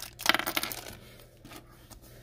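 A small clear plastic bag crinkling as a LEGO minifigure is worked out of it, with a few light clicks of the plastic parts, mostly in the first second.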